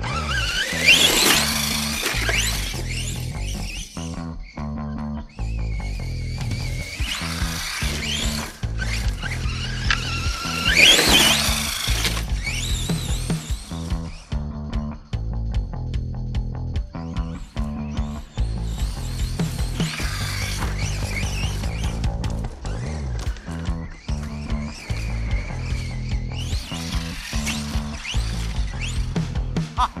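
Background music with a steady beat. Over it, a radio-controlled truck's motor whines and rises in pitch as it accelerates, loudest about a second in and again about eleven seconds in.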